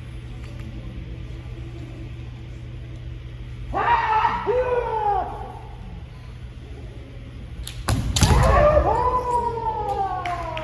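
Kendo fencers' drawn-out kiai shouts about four seconds in and again near the end, two voices at different pitches overlapping. The second shout comes with a sharp crack and a heavy thump, a bamboo shinai strike and a stamping foot on the wooden floor.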